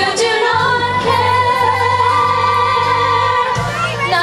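Young performers singing a musical-theatre song in group vocals through microphones, mostly female voices holding long notes over a steady bass line that comes in about half a second in.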